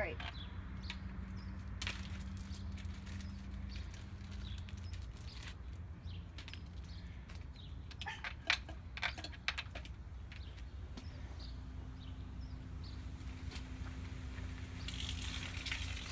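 Sharp clicks as the Sprite bottle and Mentos are handled, then, about a second before the end, the hiss of Sprite foaming up out of a 2-litre bottle as the Mentos set off the fizz. A steady low rumble sits underneath throughout.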